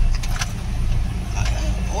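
Steady low engine and road rumble inside the cab of a slowly moving vehicle, with a few light clicks and rattles.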